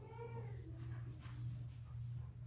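A short, high, wavering cry lasting about half a second at the start, over a steady electrical hum.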